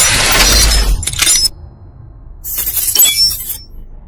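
Logo-intro sound effects of shattering glass: a loud crash that cuts off about a second and a half in, then, after a short lull, a second burst of shattering with bright tinkling that fades out shortly before the end.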